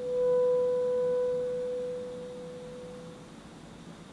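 Alto saxophone holding a single soft, pure-toned note that swells in at the start and slowly fades away over about three seconds.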